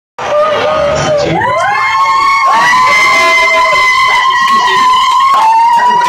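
A group of people cheering and whooping, with long, high held shouts that overlap and rise in pitch as each begins.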